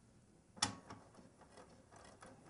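Bernina sewing machine mechanism: one sharp click about half a second in, then faint light ticking as the machine is readied to sew Velcro tape under piping foot 38.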